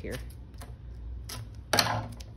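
Scissors snipping through a strip of adhesive tape: a few sharp clicks of the blades, then a louder, rasping cut near the end.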